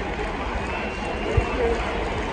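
Large stadium crowd chattering, many voices blending into a steady din, with a single low thump about one and a half seconds in.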